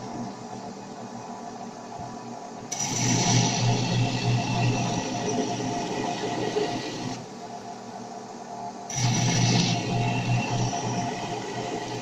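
Belt grinder running steadily, with a black walnut axe handle pressed against the sanding belt in two stretches of louder, hissing grinding: the first about three seconds in and lasting about four seconds, the second starting about nine seconds in.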